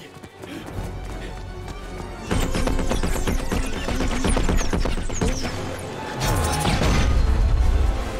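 Film score playing under a run of sharp crashes and impacts. The loudest part comes in the last two seconds, with a heavy low crash.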